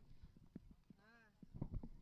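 Near silence on the cricket ground, with a faint wavering call about halfway and a few soft knocks near the end.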